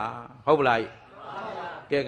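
Speech only: a man's voice delivering a Buddhist sermon in Burmese, with a short quieter stretch in the middle.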